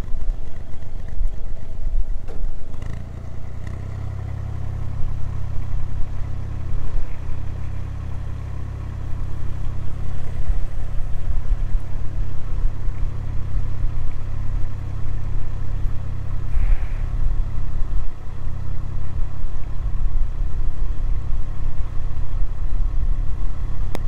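Narrowboat engine running at low revs in gear, its low rumble stepping up a few seconds in and again about nine seconds in as the boat is swung round, with wind buffeting the microphone.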